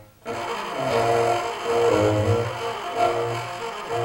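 Live jazz: a tenor saxophone playing a sustained melodic line over a double bass, with a short break in the sound right at the start.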